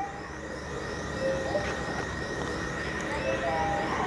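Big-box store ambience: a steady background hum with faint, distant voices of other shoppers, and a thin, steady high-pitched tone throughout.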